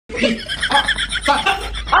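A high, wavering vocal sound broken into quick pulses, three to four a second.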